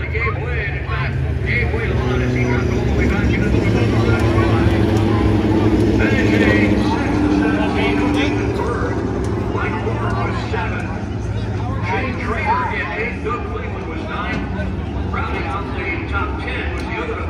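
Midget race cars' engines running at racing speed around the speedway, getting louder to a peak about six seconds in and then fading as they pass. People talking nearby.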